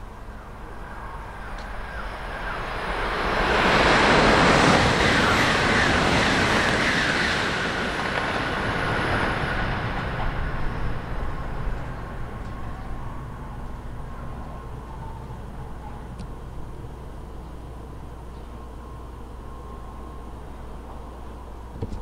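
Doctor Yellow, the 923-series Shinkansen inspection train, passing through a station at speed: the train noise builds over a few seconds, is loudest about four to six seconds in, then fades away as it recedes.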